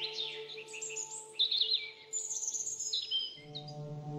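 Birds singing: a quick run of chirps, trills and short whistled glides, laid over soft sustained ambient music tones. A new low chord comes in near the end.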